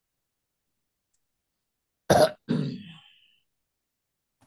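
A person clearing their throat, two short rough bursts about two seconds in, the second trailing off.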